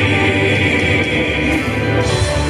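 Men's gospel quartet singing in close harmony, holding long sustained notes over a small band of acoustic guitar and piano.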